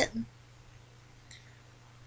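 Two faint light clicks about a second in, from a paper trimmer being handled, over a low steady hum.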